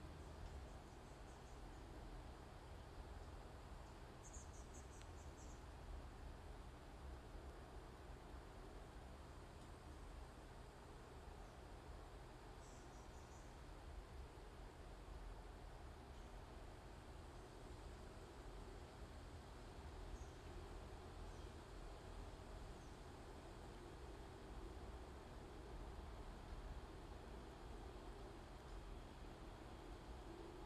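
Near silence: steady low room hum, with a few faint, short high-pitched chirps.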